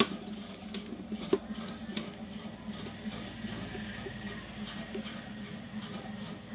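Faint clicks and light taps from handwork on a car stereo's circuit board during soldering, over a steady low hum; a sharper click comes about a second in and another at about two seconds.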